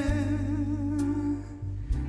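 A man's voice holds a long sung note that ends a little past halfway, over sustained chords on a Gibson electric guitar; a fresh guitar strum comes just before the end.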